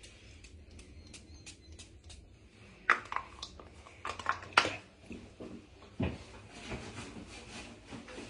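Handling noises from someone moving about close to the phone. There are faint, evenly spaced clicks at first, about four a second. Then come a few sharp clicks and knocks, loudest about four and a half seconds in, and a dull thump about six seconds in.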